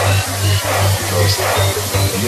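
Electronic dance remix music in the Cambodian vai lerng nonstop style, with a loud bass line broken into short, rapid pulses under a pitched melodic line.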